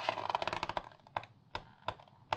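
Glossy magazine pages being handled: a quick run of crackling paper clicks through the first second or so, then a few separate sharp paper snaps as the page corner is worked to turn it.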